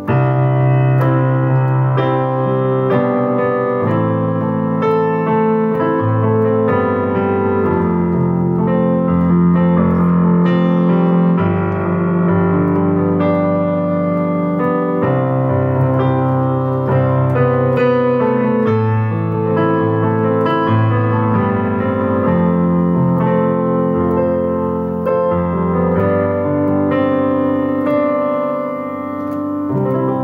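Digital piano improvising flowing, elegant background music off the cuff: sustained chords under a melody, with notes struck continuously, easing a little near the end.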